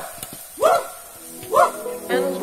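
Men's voices shouting a short call in a steady rhythm, about once a second, as a war-dance chant. Music fades in under the last shout.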